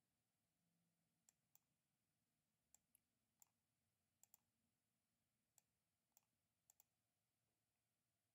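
Near silence broken by about a dozen faint, sharp clicks at irregular intervals, some in quick pairs: computer mouse button clicks.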